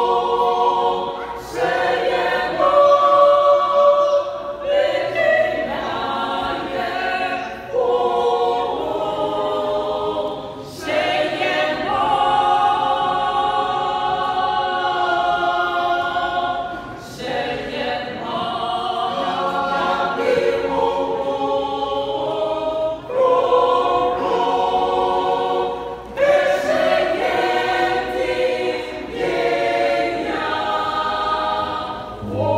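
Small mixed choir of men and women singing a cappella in harmony, in long held phrases with short breaks between them.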